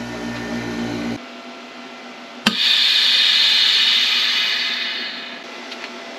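Vevor chamber vacuum sealer ending its cycle. The vacuum pump hums for about a second and stops. About two and a half seconds in, a sharp click is followed by a loud hiss of air rushing back into the chamber, which fades away over about three seconds.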